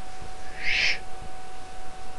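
A short breath blown out through pursed lips, about half a second in, over a faint steady tone.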